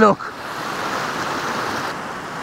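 Fast-flowing moorland stream rushing over rocks: a steady, even rush of white water.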